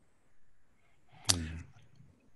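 A single sharp click about a second and a quarter in, followed at once by a brief low voiced sound from a man, with faint background noise around it.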